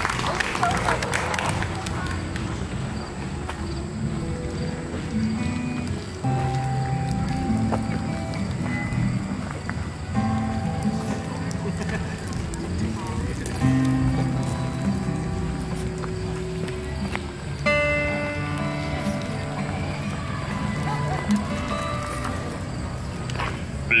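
Applause fading out in the first second or two, then an acoustic guitar playing a song's instrumental intro in held chords and notes, with people talking underneath.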